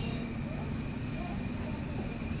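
Hot oil sizzling steadily as rice-flour chekkalu deep-fry in a large kadai, over a steady low rumble.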